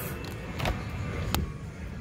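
Low steady background rumble with a soft knock under a second in and a single sharp click a little past halfway.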